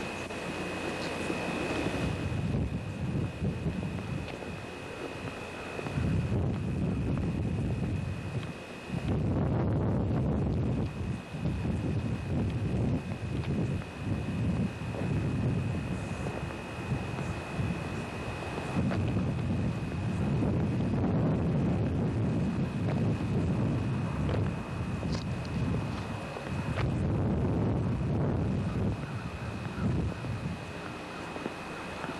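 Wind buffeting a camcorder microphone: a low rumble that rises and falls in gusts, with a thin steady high whine underneath.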